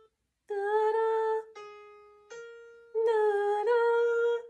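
Two piano notes a second apart ring out and fade one after the other, played by an ear-training app for interval comparison. Around them a woman sings notes on the same pitches with a slight waver: one before the pair and two after, near the end.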